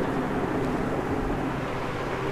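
Steady mechanical hum with a rushing background noise, with no distinct knocks or strokes.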